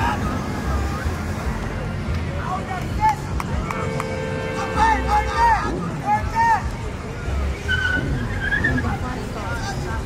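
Crowd voices and calls over the low rumble of car engines idling and rolling slowly through an intersection, with a steady held tone for about two seconds near the middle.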